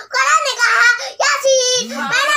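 A young boy singing a devotional recitation in praise of the Prophet Muhammad ﷺ in a high, melodic voice, with a short pause for breath about a second in.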